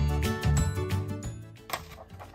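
Upbeat background music with a steady beat and bright chiming notes, fading out about a second and a half in, followed by a single sharp click near the end.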